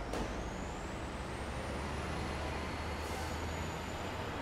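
Steady low rumble of an idling vehicle under traffic noise, with a faint high whine rising slowly and a short hiss about three seconds in.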